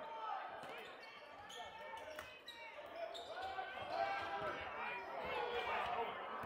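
Basketball bouncing on a hardwood court during play, amid a mix of crowd and player voices in a gym.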